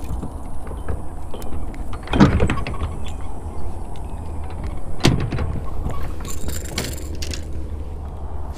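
Steady low rumble of wind on the microphone, with scattered clicks and knocks of fishing gear being handled on a wooden dock; the two loudest knocks come about two and five seconds in.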